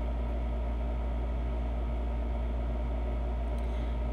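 Steady low background hum with a few constant tones above it, unchanging throughout.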